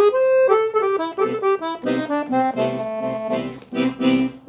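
Dallapé piano accordion playing a phrase of quick single notes, an A blues scale run used for improvising over a C major-seventh chord, with a few notes held out near the end.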